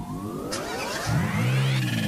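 Car engine sound effect revving up, its pitch climbing steadily and peaking near the end, over a steady low drone.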